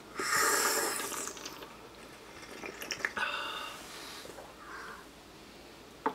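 Tea being slurped from small cups, air drawn in noisily with the tea: a long slurp of about a second at the start, a shorter one with a light click about three seconds in, and a faint one near the end.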